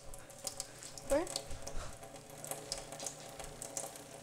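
Thin stream of water from a kitchen faucet falling into a stainless steel sink basin, with an irregular crackle of small splashes.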